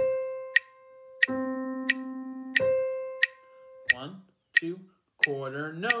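Octave slur drill: a sustained instrument tone alternates between a low note and the same note an octave higher, changing every two beats (half notes), each note fading after its attack. A metronome clicks steadily about 90 times a minute underneath, and a man counts off the next round near the end.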